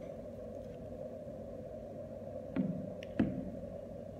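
Two short, dull knocks about half a second apart near the end, as a small steel extruder barrel is set down on a table among the loose screws, over a steady low room hum.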